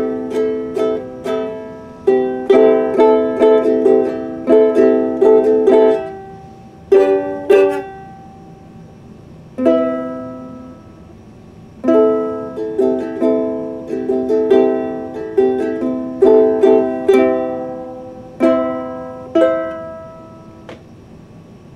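Ukulele played in chords: runs of strums that ring and die away, broken by a couple of short pauses in the middle.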